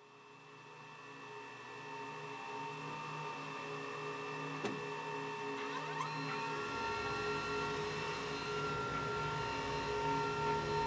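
A 3D printer running: its stepper motors hum and whine in several steady tones that shift pitch now and then. The sound fades in from silence and grows louder over the first few seconds.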